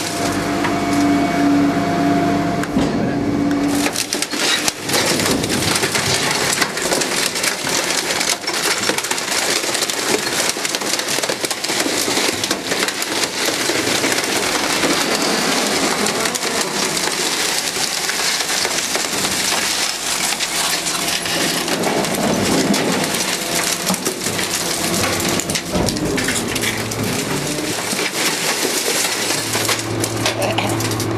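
Refuse truck's rear compaction mechanism crushing a washing machine in the hopper: a continuous din of cracking, crunching and snapping metal and plastic. A steady hum sits under it in the first few seconds.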